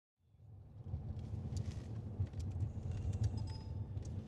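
A steady low rumble of a police car's engine and road noise, heard from inside the cabin at speed, fading in at the start, with a few faint clicks.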